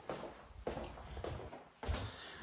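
Quiet footsteps and handling noise of someone walking through a doorway, with a few soft knocks and a sharper click near the end, typical of a door being opened.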